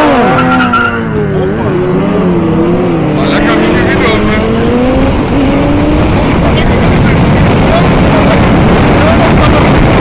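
Two sportbikes' inline-four engines revving hard under full acceleration, the pitch dipping about one and a half seconds in and then climbing again. After about six seconds the engine note fades as the bikes pull away, leaving loud, steady wind and road noise.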